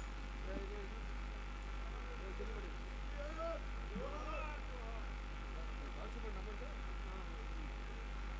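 Indistinct background talk from several people, over a steady electrical hum.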